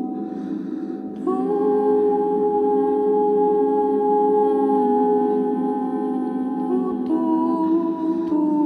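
Layered wordless vocal tones built up with a looper into a sustained ambient chord. A new held note enters about a second in, and the chord shifts twice later on.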